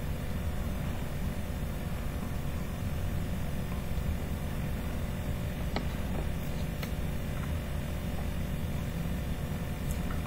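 Steady low background hum and hiss of room noise, with two faint clicks about six and seven seconds in.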